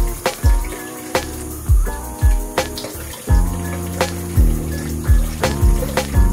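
Background music with a steady beat: deep kick drums that drop in pitch, sharp hits on top, and held bass and chord notes.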